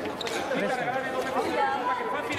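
Indistinct chatter of several voices at once, echoing in a large sports hall.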